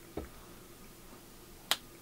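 A single sharp, short click about three-quarters of the way through, after a soft low thump near the start, in a quiet small room.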